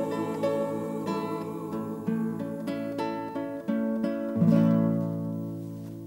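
Acoustic guitar playing a picked melody, ending on a louder chord about four and a half seconds in that rings and fades away.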